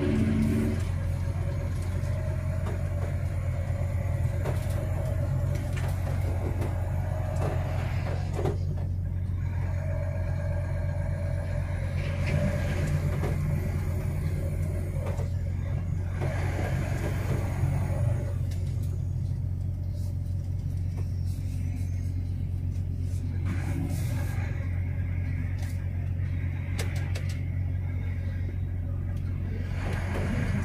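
A truck's diesel engine running in a steady low drone, heard from inside the cab while driving, with a few faint knocks and rattles.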